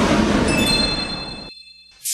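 Logo ident sound effect: a loud whoosh of noise that fades steadily, joined about half a second in by a few high ringing tones, all cutting off about a second and a half in.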